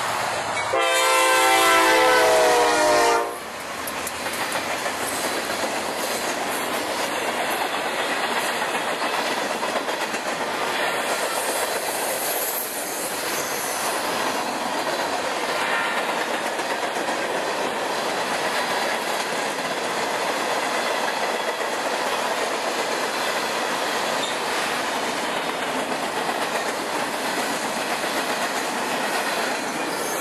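Diesel freight locomotive sounding its horn, one long blast that stops abruptly about three seconds in. The train's tank cars and covered hopper cars then roll past close by, with steady wheel noise and clickety-clack over the rail joints.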